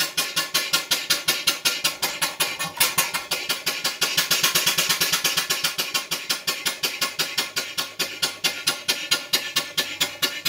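Full-size vertical marine steam engine running on the bench, its exhaust and motion beating in quick, even knocks, about seven a second.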